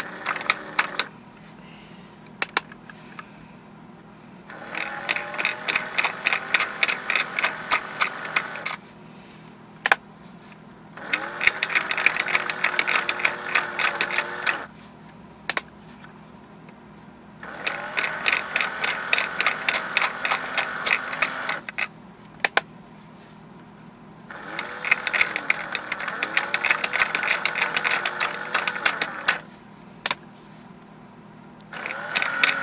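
Cordless drill turning the shaft of a homemade wooden rotary marble lift in four runs of about four seconds each, the motor whine rising in pitch as each run starts, with rapid clicking of glass marbles in the wooden mechanism. The lift runs smoothly, without jamming. A few single clicks fall in the pauses between runs.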